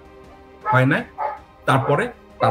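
A man speaking in short bursts over faint, steady background music.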